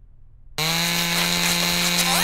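Cartoon sound effect: a steady, buzzing drone starts about half a second in and holds, with quick rising whistles near the end as confetti bursts from a box.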